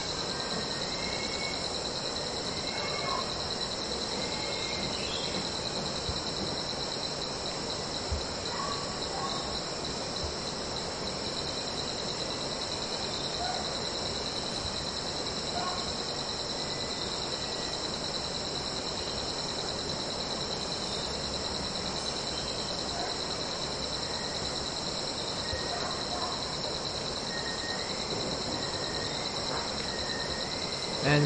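Steady chorus of crickets trilling, with a few faint, short bird chirps scattered through it.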